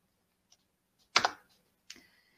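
Computer keys being pressed: a loud double click a little past halfway, then a single lighter click near the end. The key presses advance the presentation slide.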